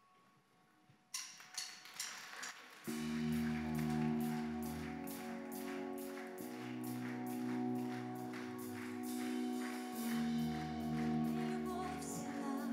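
Live church worship band starting a song: a few drum and cymbal hits about a second in, then sustained keyboard chords over bass with a steady, even cymbal beat from about three seconds in.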